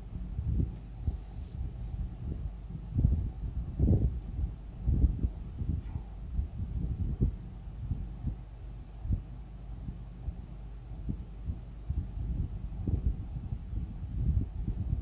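Pencil drawing on a sheet of paper on a table, heard mostly as irregular low knocks and thuds of the hand and pencil on the tabletop over a steady low hum. A short hiss about a second and a half in is the paper sheet being slid across the table.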